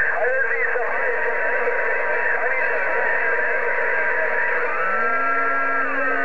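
President HR2510 radio tuned to 27.085 MHz, its speaker putting out static and garbled voices from the channel. A steady whistle sets in about a second in, and sliding whistles follow near the end.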